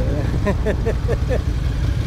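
Motorcycle engine idling, a low steady rumble, with a person's voice in short quick syllables over it during the first second and a half.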